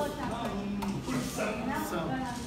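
Voices singing and talking over the music of a capoeira roda, with one note held briefly near the middle and a single sharp knock just before the one-second mark.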